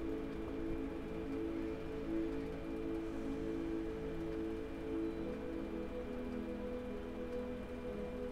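Soft background meditation music: held, droning pad notes that shift to a new chord about five seconds in.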